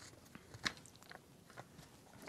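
Faint clicks and scrapes of a threaded battery cap being unscrewed from a night vision scope and an 18650 lithium-ion battery sliding out of its tube. One sharper click comes about two-thirds of a second in.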